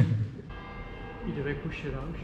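Church bell ringing, its several steady tones beginning about half a second in and holding through, with faint voices under it.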